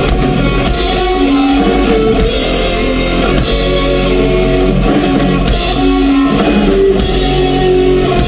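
Live metal band playing: electric guitars holding notes over a drum kit, with cymbal crashes coming in about every second and a half, recorded loud.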